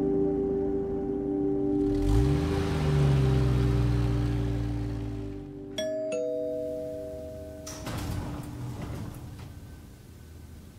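Elevator arrival chime: two bell-like notes about six seconds in, the second lower than the first. About two seconds later comes a short burst as the elevator doors slide open, all over soft background music.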